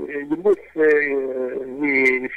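Speech only: a man's voice talking in long, drawn-out syllables with short breaks between them.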